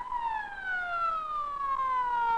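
Police car siren wailing: its pitch climbs to a peak at the start, then winds slowly down.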